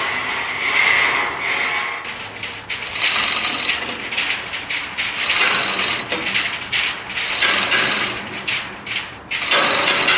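Three-ton manual chain hoist being hauled by its hand chain: rapid ratcheting clicks and rattling chain, rising and falling in surges with each pull, as the hoist lifts a five-ton steel plate.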